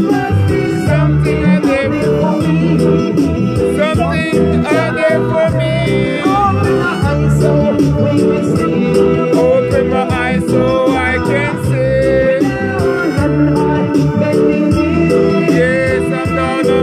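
Loud reggae backing track with a man singing live over it into a microphone.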